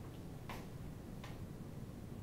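Quiet room tone with a low hum and two faint ticks, about half a second and a second and a quarter in.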